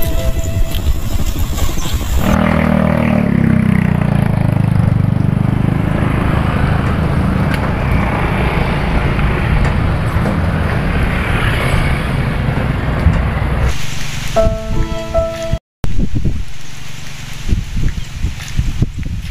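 Background music, then from about two seconds in a long, loud stretch of motor scooter engines running, one winding down in pitch near its start, with a steady rumbling rush. The music comes back briefly near the end, cut by a short dropout.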